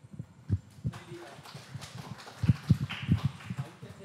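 Irregular low thumps and bumps of handling noise on a handheld microphone as it is moved about.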